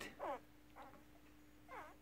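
Newborn working kelpie puppies giving three short, faint, high squeaks, each sliding down in pitch, as they jostle at their mother's teats.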